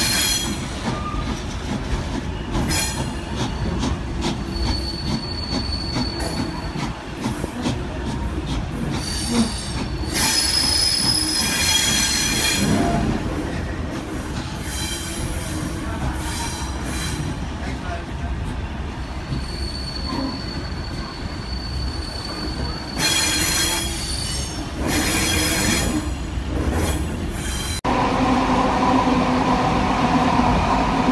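Heritage train carriages rumbling around a curve, their wheels squealing against the rails in several long spells of high, steady squeal. Near the end the sound cuts abruptly to a steady, lower hum.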